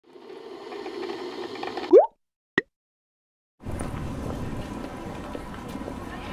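Intro sound effects. A noise builds up and ends in a quick rising sweep about two seconds in, followed by a single short plop. After a second of silence, a steady noisy background comes in.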